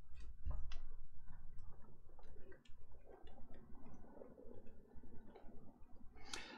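A scatter of faint, light clicks at irregular intervals, over a dozen in a few seconds.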